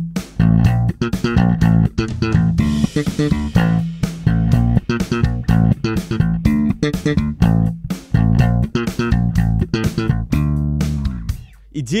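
Fender Jazz Bass played slap style: a funk-rock riff in D minor in quick sixteenth notes, alternating thumb slaps and finger pops with muted dead notes among the live ones, each attack a sharp snap over the low notes. The playing stops about a second before the end.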